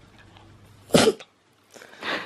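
A small fluffy dog sneezes once about a second in, a single short sharp burst.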